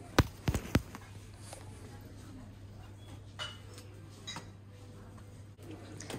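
Merchandise being handled in a wire display basket: a quick cluster of sharp clicks and knocks in the first second, then faint rustling of the packaged blankets over a steady low hum.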